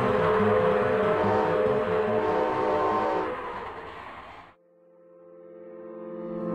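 Cartoon steam-train sound effect: repeated chugging with a whistle sounding over it, fading out and stopping a little over four seconds in. Then a low held chord swells up from silence near the end.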